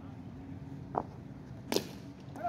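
A single sharp knock near the end, a cricket bat striking a tennis ball, over a faint low background murmur.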